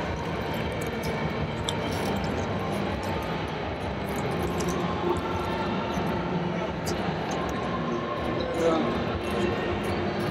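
Steady background hubbub of a crowded exhibition hall: many indistinct voices, with some music underneath.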